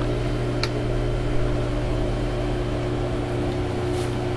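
Steady low machine hum, with a few even tones held throughout and a short click about half a second in.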